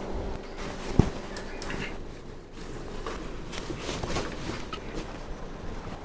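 Cotton bed sheet rustling as it is spread and tucked over a mattress, with scattered small ticks and one sharp knock about a second in.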